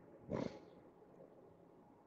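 A man's short sniff through a congested nose, once, shortly after the start.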